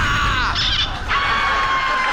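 A man's loud, shrieking yell over a low rumbling boom, followed about a second in by a long, high, steady held cry.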